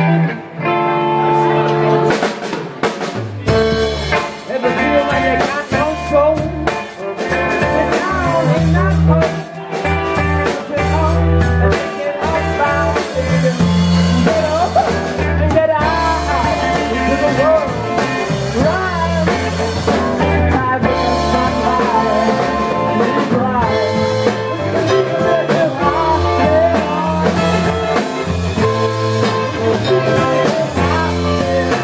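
Live rock band playing an instrumental passage on electric guitar, bass guitar and drum kit. The bass and drums come in fully about three seconds in, under sustained guitar lines with notes that bend in pitch.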